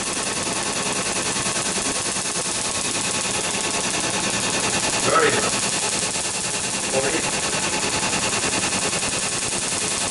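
Excimer laser firing a steady, rapid train of snapping pulses as it ablates and reshapes the cornea during laser vision correction.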